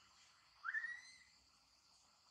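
A macaque gives a single whistle-like coo call about half a second in, sweeping quickly up in pitch and then held briefly, over a steady high hiss of insects.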